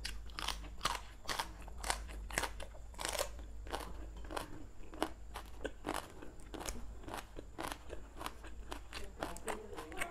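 Close-up crunching of raw water spinach stems being bitten and chewed, with crisp snaps of stalks broken by hand; sharp crunches come about twice a second.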